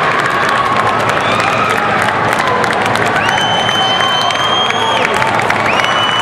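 Crowd cheering and applauding, a dense, steady wash of clapping and voices. A high, steady whistle-like tone sounds for about two seconds near the middle and starts again near the end.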